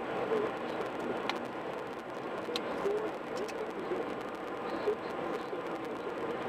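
Steady road and tyre noise from a car cruising at highway speed, heard from inside the cabin, with a couple of faint clicks.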